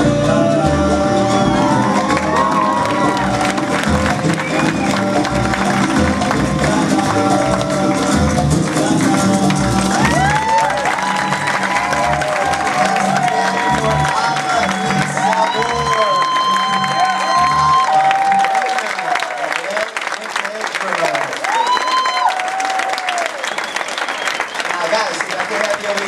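Salsa music with a steady beat; about ten seconds in the bass drops away and the audience takes over with cheering, whooping and applause as the dance ends.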